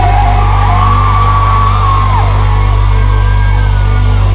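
Loud live band music in a large hall: a heavy, steady bass under a high, wavering melodic line, with a break in the vocals.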